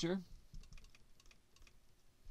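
Marker pen writing on a glass lightboard: faint, irregular small clicks and scratches of the tip on the glass.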